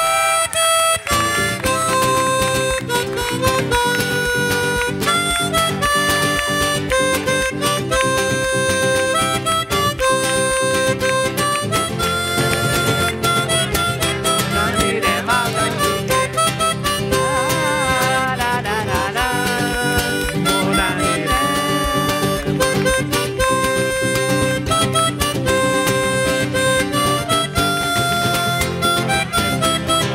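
Harmonica solo played into a microphone, a melody of long held notes over strummed acoustic guitar. Some notes waver in pitch around the middle.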